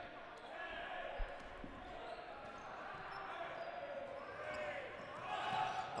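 Gym ambience during a dodgeball game: indistinct players' and spectators' voices echoing in the hall, with dodgeballs bouncing and hitting the hardwood court, including a dull thump about a second in.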